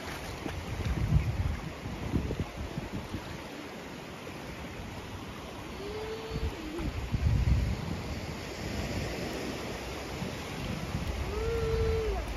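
Shallow sea water lapping and splashing around a child's legs as she wades, with surf behind and gusts of wind buffeting the microphone about a second in and again around the middle.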